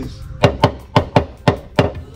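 Hourglass-shaped, cord-laced talking drum struck hard with a curved stick, six sharp strikes in quick succession, each ringing briefly. It is the call signal for summoning a staff member.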